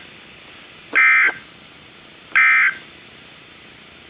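The EAS end-of-message (SAME 'NNNN') digital data bursts on a NOAA Weather Radio broadcast, marking the end of the tornado warning. The tones play through a weather alert radio's speaker as short bursts about 1.4 s apart: two in full, plus the tail of the first right at the start.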